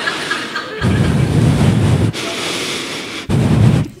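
Audience laughing loudly, swelling and dipping a few times.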